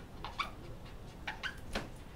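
Faint scratching of a pen writing on paper: a few short strokes about half a second in and again near the end.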